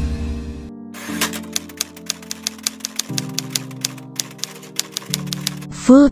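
Typewriter key-click sound effect: a rapid run of sharp clicks, several a second, from about a second in until near the end, over held music chords. It opens with the fading end of a whoosh with a low rumble.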